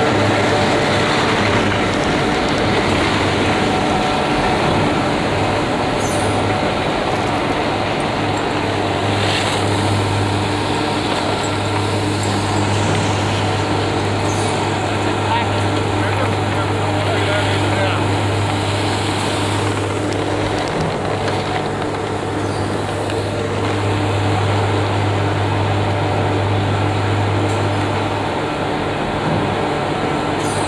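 Detachable chairlift terminal machinery running with a steady low hum and mechanical drone as chairs pass through the terminal.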